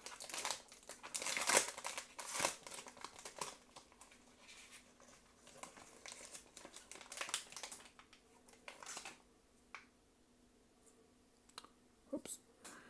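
Plastic wrapper of an Upper Deck Victory hockey card fat pack being torn open and crinkled, in bursts of crackling through the first three seconds or so and again from about six to nine seconds, then quieter with a few light ticks.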